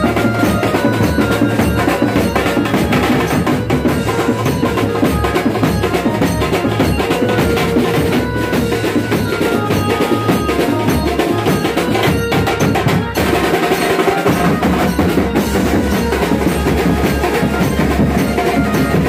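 Mumbai banjo-party street band playing: fast, loud drumming on tom drums and a large metal-shelled drum, with a melody played through horn loudspeakers over the beat. There is a brief break just past the middle, then the drumming and melody pick up again.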